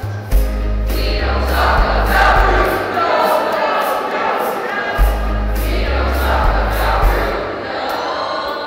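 Mixed school choir singing in unison and harmony over an accompaniment with a low bass line that moves every second or so and a steady beat of about two ticks a second.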